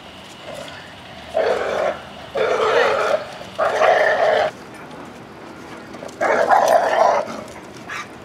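A leash-reactive dog barking aggressively at another dog walking by, in four loud outbursts of half a second to a second each.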